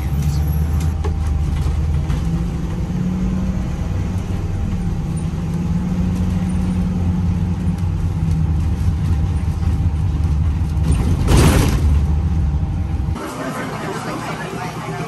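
Shuttle bus engine running with a low, steady drone, heard from inside the bus, with a short hiss about eleven seconds in. The drone cuts off suddenly near the end, giving way to café chatter.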